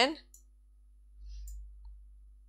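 A few faint computer mouse clicks as a window is clicked and dragged on screen: one just after the start, another about a second and a half in, and a tiny one just after.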